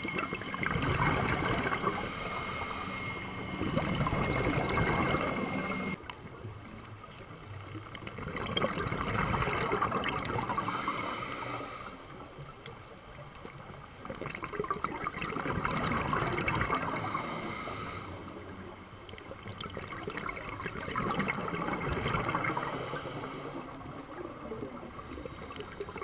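Scuba diver's regulator breathing heard underwater: about four slow breath cycles, each a rush of bubbling exhaust that swells and fades over several seconds, with a short high hiss in each cycle.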